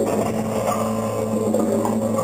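Live electronics holding a steady low drone with several sustained tones, with short percussion and electronic notes sounding over it, in a piece for percussion and live electronics.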